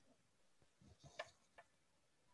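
Near silence on a video call, with a few faint, brief clicks about a second in and again a little later.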